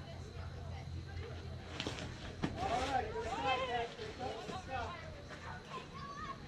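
Voices calling out across an outdoor baseball field, loudest for a couple of seconds near the middle, over a steady low hum. One sharp crack comes about two and a half seconds in.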